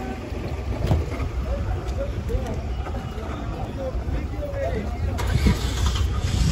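A car engine running, heard under low rumbling wind on the microphone, with muffled voices in the background.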